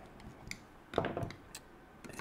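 Light clicks and a short knock from hands handling the engine on its mount and small hand tools on a nitro RC car. The loudest knock comes about a second in.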